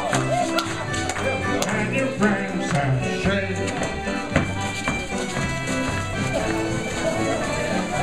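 Live contra dance band of fiddles and keyboard playing a steady dance tune, with dancers' feet tapping and shuffling on the wooden floor.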